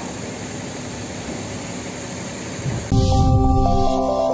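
Steady rushing noise at a large blaze being fought with fire hoses. About three seconds in it cuts off abruptly to a louder electronic logo jingle with held synthesizer notes.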